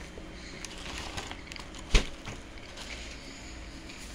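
Faint handling noise over a low steady hum, with one sharp knock about halfway through.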